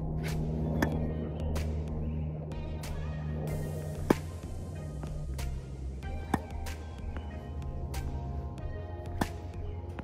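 Background music, over which a tennis ball is struck by a racket several times at uneven intervals with short sharp hits; the loudest comes about four seconds in.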